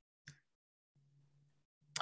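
Near silence on a video-call audio track, with one faint short sound about a quarter second in.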